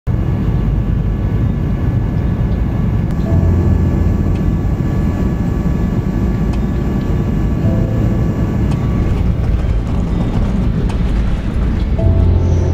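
Jet airliner cabin noise heard from inside the plane: a steady, loud engine and airflow rumble with faint steady whining tones above it.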